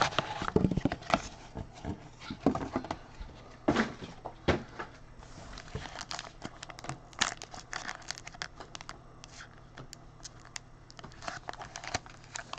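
Foil trading-card pack wrapper crinkling and tearing as it is handled and opened, an irregular run of sharp crackles and rustles.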